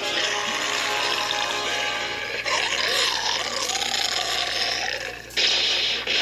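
Cartoon soundtrack playing from a TV: music and sound effects, with a wavering sound in the middle and a sudden loud burst about five seconds in.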